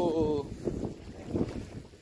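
Wind blowing across a phone's microphone in uneven gusts.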